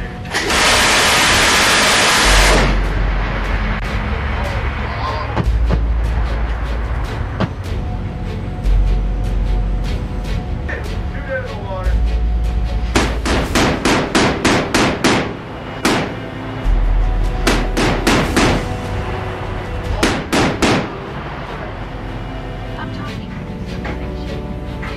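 Automatic fire from a ship-mounted machine gun over background music: one long continuous burst near the start, then later several bursts of rapid separate shots, about five a second.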